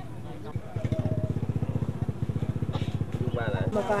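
Motorcycle engine running close by with a fast, even putter, starting abruptly under a second in. Voices come in near the end.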